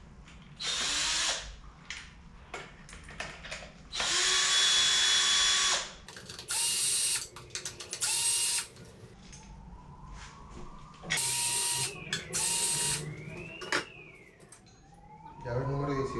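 Cordless drill-driver running in about six short bursts of one to two seconds each, the longest about four seconds in, as it backs out screws on the front wheel assembly of a Xiaomi Mijia M365 electric scooter.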